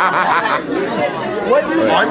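Speech only: overlapping chatter of several people talking close by.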